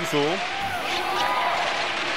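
Basketball court sound during live play: a steady arena crowd murmur, with sneakers squeaking on the hardwood floor and the ball being dribbled.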